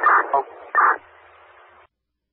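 Two-way fire radio heard through a scanner: a short spoken word and a brief burst, then the thin hiss of the open channel, which cuts off abruptly near the end as the transmission drops.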